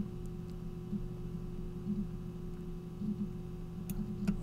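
Faint steady electrical hum and room tone from the recording setup, with a few low tones held throughout.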